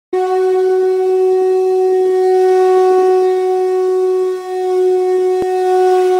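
One long, steady, horn-like note held at a single pitch, with a slight dip in level about four seconds in and a brief click shortly before the end.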